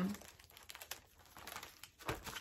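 Faint rustling and crinkling as a paper pattern packet is handled, a string of small soft crackles.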